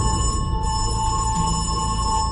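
Electric doorbell ringing in one long, steady ring over background music.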